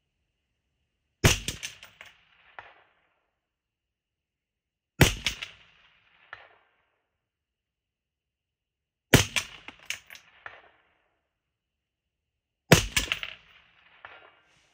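Four single shots from an IWI X95 5.56 bullpup rifle, about four seconds apart, each a sharp crack with a short echoing tail. A faint ping follows each shot about a second and a half later: the bullet striking the steel silhouette target at 300 yards.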